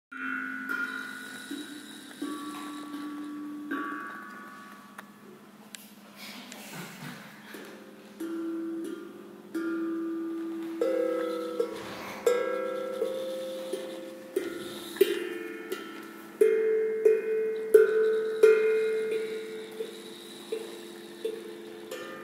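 Several steel tongue drums played together by hand: struck notes ring out and overlap. The playing is sparse at first and grows louder and busier in the second half.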